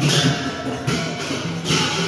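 Newar Lakhe dance music played live: a dhime barrel drum beaten in a steady rhythm, with hand cymbals clashing about once a second.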